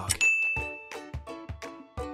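A single bright ding, a quiz chime sound effect marking that the answer countdown has run out, rings for under a second over light background music of short stepped notes.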